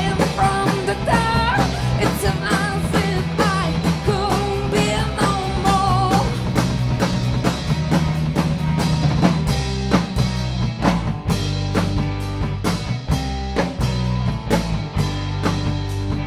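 Live rock band playing: a woman sings over drum kit, bass and electric guitar for about the first six seconds. The band then carries on without the voice, with a steady drum beat.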